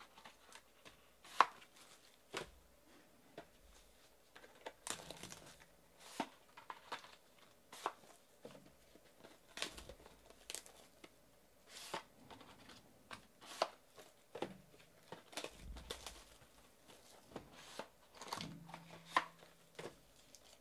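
Plastic shrink-wrap and card packaging crinkling and tearing as hands unwrap a box of trading card packs, mixed with scattered taps and clicks as packs and boxes are handled on a table. The sounds come in short, irregular bursts.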